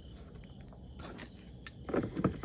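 Light handling of a hard plastic battery cover under the hood: a few small clicks and crackles as a hand touches and grips it, with a slightly louder knock near the end.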